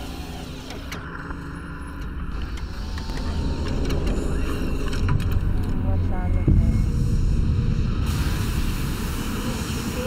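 Horror film trailer sound design: a deep rumbling drone that swells over several seconds and eases off slightly near the end, with a few sharp clicks and crackles over it.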